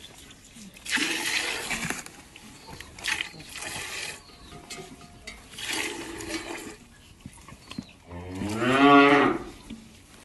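Milk squirting in short spurts from hand milking, then a cow mooing once near the end, a long low call that rises and falls in pitch.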